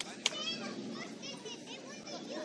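Children's voices shouting and calling out, with one sharp thud about a quarter second in.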